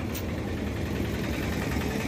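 A vehicle engine idling steadily, heard as a low, even rumble.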